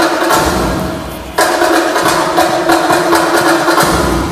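Accompanying music: a held chord fades, then is struck again suddenly and loudly about a second and a half in, and holds.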